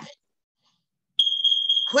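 A single high, steady electronic beep, just under a second long, starting with a click a little past the middle after a second of near silence.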